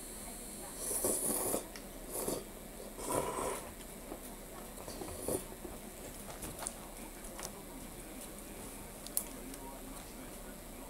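Faint, muffled voices in a few short bursts over a steady hiss, heard through a television's speaker recorded in a room, with one sharp click near the end.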